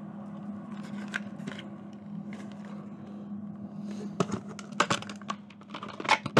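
A plastic VHS cassette and its clamshell case being handled: a run of sharp plastic clicks and knocks about four to five seconds in, over a steady low hum.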